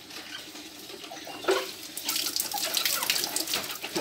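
Water scooped from a metal bucket with a plastic mug and poured over a motorcycle, splashing onto it and the wet concrete from about two seconds in. A short sharp sound comes about one and a half seconds in.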